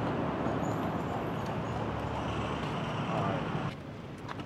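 Steady outdoor street noise of road traffic, dropping off abruptly near the end.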